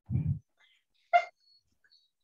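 A dog barking over a video call: two short barks about a second apart, the first low, the second higher and sharper.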